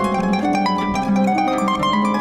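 Concert pedal harp playing a quick stream of plucked notes that ring on over one another above a held low note.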